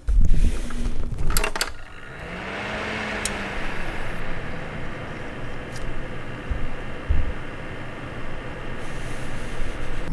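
Desktop PC powering on: a few clicks in the first couple of seconds, then the fans spin up with a low hum that rises and slowly falls, settling into a steady whir.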